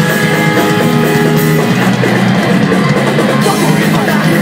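Hardcore punk band playing live: electric guitars and a drum kit, loud and dense. A sustained guitar chord rings for the first second and a half before the playing moves on.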